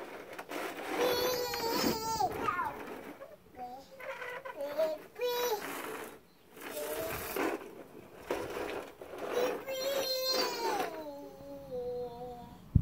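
A toddler's wordless vocalizing: drawn-out, high-pitched whiny calls that slide in pitch, with the loudest around two seconds and ten seconds in and shorter calls between.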